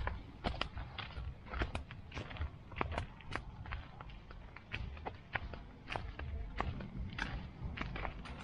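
Footsteps crunching on a gravel path: irregular sharp crunches, several a second, over a steady low rumble.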